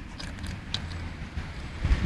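Low, uneven rumbling background noise with a few faint clicks and a louder knock near the end.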